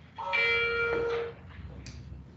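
A single bell-like chime: several ringing tones sound together for about a second, then die away. A faint click follows near the end.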